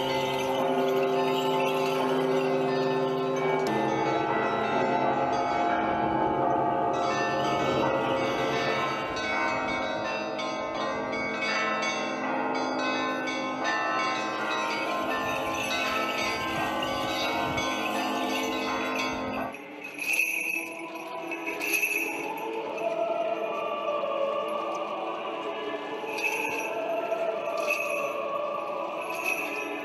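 Russian Orthodox church bells ringing, many overlapping tones held and sustained. About twenty seconds in, the sound cuts abruptly to a quieter, thinner scene with short, repeated high jingles.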